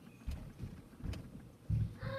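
Footsteps thudding on a carpeted floor as someone walks quickly away, a handful of low thumps with a light click about a second in and the heaviest thump near the end.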